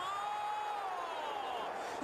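A male commentator's long, drawn-out shout on one held vowel, falling in pitch near the end, as a shot is taken. Steady stadium crowd noise runs underneath.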